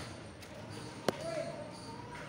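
Pliers twisting iron binding wire around a bamboo joint: a few faint ticks and one sharp click just after halfway through.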